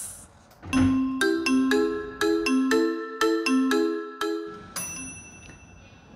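A short bell-like chiming jingle of about a dozen quick notes lasting some four seconds, then a single high ring that fades near the end.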